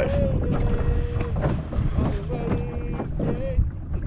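A distant voice singing long, drawn-out notes, each held at one pitch for about a second, with a short break between them. Wind and water noise from the moving boat run underneath.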